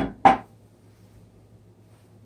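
A man's voice finishing a sentence, then quiet room tone with a low steady hum.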